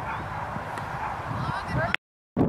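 Outdoor ambience with indistinct distant voices and a few short, rising calls near the end.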